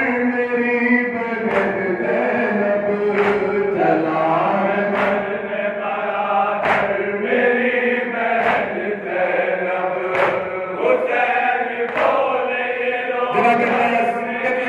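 Men's voices chanting a Shia noha in a loud, reverberant hall, with the crowd's hands striking their chests (matam) in unison roughly every two seconds.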